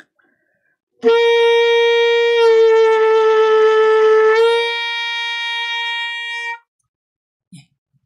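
Alto saxophone holding the upper G and bending it: about a second and a half after the note starts the pitch dips toward G-flat, and a couple of seconds later it slides back up to G. The note is then held more softly and stops about six and a half seconds in. This is a pitch bend done by loosening and then firming the embouchure.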